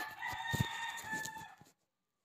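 A rooster crowing once, a single long call that ends about one and a half seconds in, with a few low thumps underneath.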